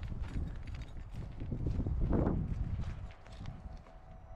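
Footsteps crunching on dry grass and dirt as a person walks, in an irregular run of short steps, with a short louder rush of sound about two seconds in.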